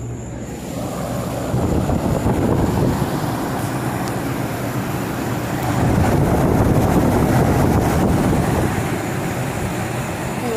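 Packaged heat pump running in cooling mode: a steady rush of air from the condenser fan blowing out through the top grille. It grows louder about six seconds in, as the fan grille comes close, and eases near the end.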